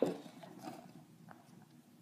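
Faint handling noise as a cardboard coin folder is picked up and moved, with soft rustling and a few light taps.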